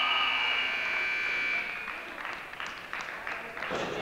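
Wrestling scorer's-table buzzer sounding a steady high tone for a couple of seconds and cutting off sharply, which marks the end of a period in the bout. Scattered clapping follows.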